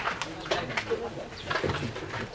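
Baseball players calling out in short shouts across the field.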